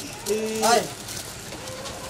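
A man's loud, drawn-out call of "aaye" ("come"), held on one note and then sliding up in pitch at the end.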